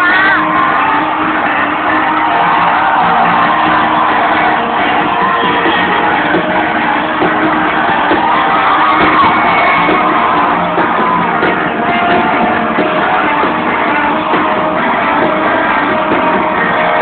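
Live rock band playing loudly in a large hall, with the crowd shouting and whooping over it. The sound is dull and cut off at the top, as recorded on a phone.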